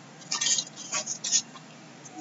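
Loose cardboard jigsaw puzzle pieces rustling and clicking as hands sift through a large pile on a table, in a few short crackly clusters.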